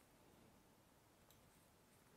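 Near silence: room tone, with one faint click a little past halfway through.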